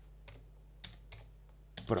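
A few separate keystrokes on a computer keyboard, spaced unevenly.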